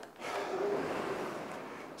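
Rowing machine's air flywheel whooshing through one drive stroke. The rush swells about a third of a second in and slowly fades as the handle comes back to the body.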